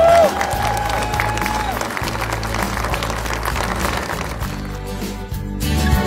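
Crowd applauding over steady background music; the clapping fades out after about four to five seconds, leaving the music.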